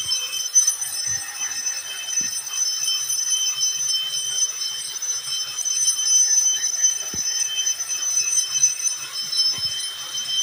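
Handheld angle grinder with a diamond cup wheel grinding a bluestone slab's square edge down toward a rounded half-round profile: a steady high-pitched whine over a continuous gritty hiss of stone being ground.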